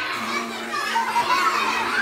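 Many children's voices talking and calling out at once, a crowd of children chattering over each other.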